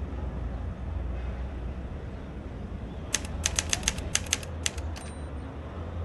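Typewriter keystroke sound effect: about a dozen quick, sharp clacks over roughly two seconds, starting about three seconds in, followed by a brief high ping.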